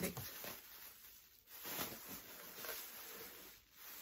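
A plastic bag rustling and crinkling in irregular bursts as it is handled and pulled open.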